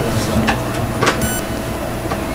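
Steady background room noise with a low hum, broken by two short clicks about half a second and a second in.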